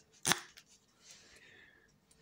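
Stainless-steel headband slider of Mixcder E9 headphones being pulled out to lengthen the headband: a sharp click a moment in, then a faint sliding rasp lasting most of a second.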